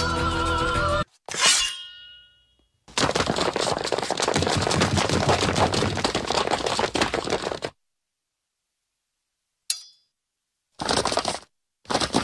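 Cartoon fight sound effects: a sustained musical sting cuts off about a second in, followed by a single ringing metallic clang, then several seconds of dense crashing and clattering like a sword brawl, and after a pause two short noisy bursts near the end.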